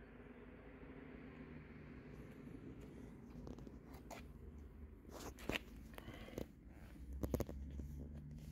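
Faint handling noise from a handheld camera being carried: soft rustles and a few short clicks, the sharpest a quick cluster near the end, over a low steady rumble.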